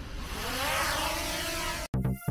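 DJI Mini 2 drone's propellers spinning up for take-off, a whirring buzz that rises in pitch and cuts off suddenly just before the end.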